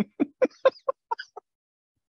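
A person laughing in a quick run of short "ha" bursts, about five a second, dying away about a second and a half in.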